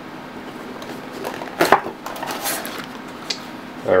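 Cardboard box being opened by hand: sharp scraping noises as the lid flap is pulled up about a second and a half in, then lighter rustling of the cardboard and a small click near the end.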